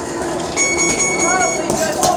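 A steady high-pitched tone sounds for about a second, starting about half a second in, over people talking.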